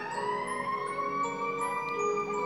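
A fire engine siren winding up, its wail rising in pitch and then holding high and steady. Christmas music with bell-like tones plays underneath.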